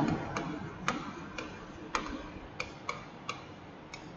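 Light clicks and taps from the pen input as words are handwritten onto a computer whiteboard, about nine or ten in four seconds at uneven spacing, one for each stroke.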